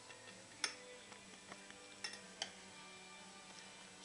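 Metal whisk clinking and tapping against the inside of a stainless steel saucepan as gravy is stirred: a few sharp clinks, one about two-thirds of a second in and two more around two seconds in, over faint stirring.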